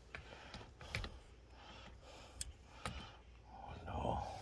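A few faint, short clicks scattered over light rustling, like small handling noises.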